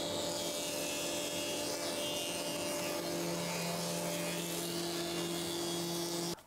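Planer-thicknesser running with a steady hum, with wooden strips being fed through it several at a time. About halfway through, a lower tone joins the hum.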